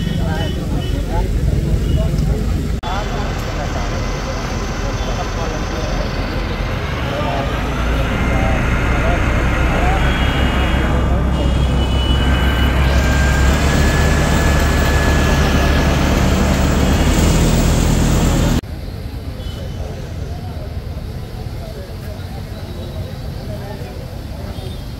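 A crowd talking indistinctly over a steady low rumble. The background changes abruptly about three seconds in, and again about three-quarters of the way through, where it drops to a quieter murmur.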